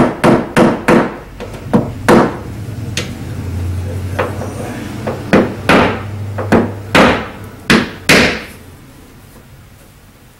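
A small hammer tapping a paintless-dent-repair tap-down punch against a car's fender, knocking down a high spot in the sheet metal. A quick run of about six sharp taps, a pause of a few seconds, then about seven more.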